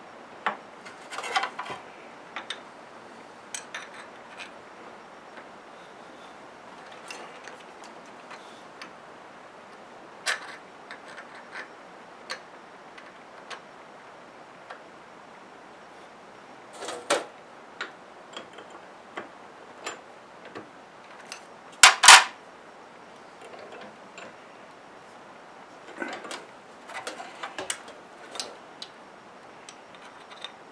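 Scattered light metal clicks and clinks as a small steel workpiece and a steel rule are handled and set against a milling-machine vise, with one louder double knock about two-thirds of the way in. The mill is not running.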